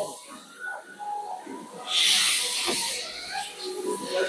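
A brief hiss lasting about a second, starting about two seconds in, against faint low murmuring.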